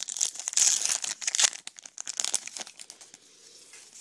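Baseball card pack wrapper being torn open and crinkled in the hands. The crackling is loudest in the first couple of seconds and dies down to faint rustling near the end.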